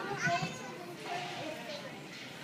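Young children's high-pitched voices, two short vocal bursts over the hubbub of children playing.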